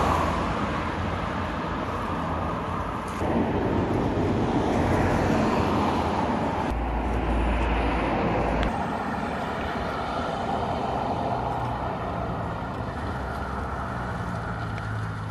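Ferrari 458 Speciale Aperta's V8 running at a standstill, its note changing a little in pitch and loudness, with a deep rumble underneath for about two seconds midway.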